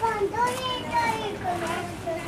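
A young child's high-pitched voice calling out in a drawn-out run of sound that slides down in pitch, over the general hubbub of a crowded pedestrian street.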